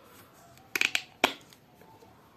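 Plastic flip-top cap of a Palmolive shower gel bottle being snapped open: a quick rattle of clicks just under a second in, then one sharp click.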